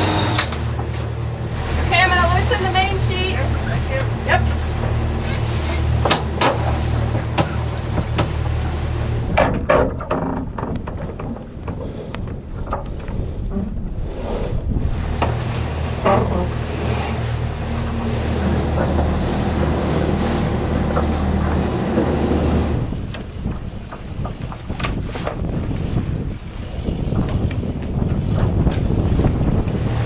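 Sail handling on a catamaran as the mainsail is lowered: lines squeak and click through the deck gear over wind and water noise. A steady low hum runs underneath and stops about three-quarters of the way through.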